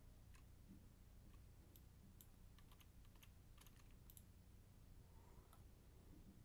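Near silence, broken by faint, irregular clicks of a computer keyboard and mouse, about a dozen over the stretch.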